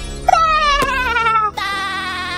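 A cartoon character's voice making two long, wavering sounds without words over background music, the first falling in pitch. There is a short click about a second in.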